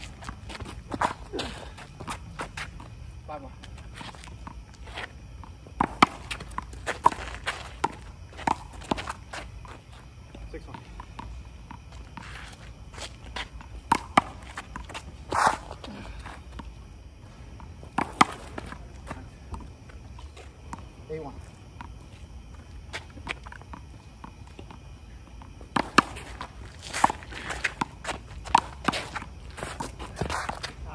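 One-wall handball rally: sharp slaps of a small rubber ball struck by gloved hands and rebounding off the concrete wall and court, mixed with sneaker footsteps and scuffs. The hits come in clusters with quieter gaps between.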